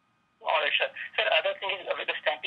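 A caller's voice over a telephone line, speaking continuously and sounding thin and narrow. It starts about half a second in, after a brief dead silence.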